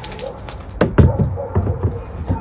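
Hand tools being handled: a few sharp clicks and knocks over a low background, the loudest two close together about a second in.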